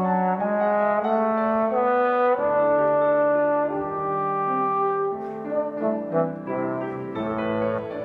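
Trombone playing a slow melodic line of long held notes, with shorter notes in the second half, over piano accompaniment.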